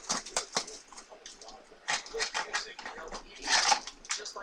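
Light handling noise: a string of small clicks and rustles, with a longer breathy rustle about three and a half seconds in.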